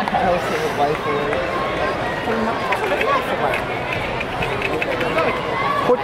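Indistinct chatter of nearby spectators, several voices talking over one another without clear words.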